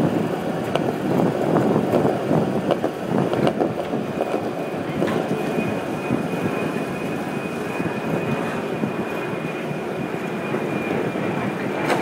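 Skateboard wheels rolling on smooth concrete during a long nose wheelie, with the board riding on its front wheels: a steady rolling rumble with occasional small clicks.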